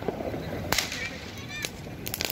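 Firecrackers bursting: three sharp cracks, the loudest about three-quarters of a second in.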